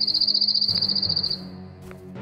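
A cricket's high, rapidly pulsed trill that lasts about a second and a half and stops a little past the middle, over low, sustained background music.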